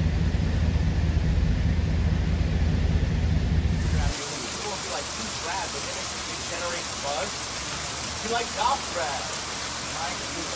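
Loud, steady low rumble of a swollen, rushing flooded river. About four seconds in it cuts to the even hiss of heavy rain pouring onto a street, with a voice talking faintly over it.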